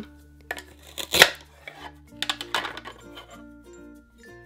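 A toy knife cutting through a velcro-joined toy nectarine on a cutting board: a rasping velcro rip ending in a sharp clack of the knife on the board about a second in, then a second rasping stretch a couple of seconds in. Light background music plays under it.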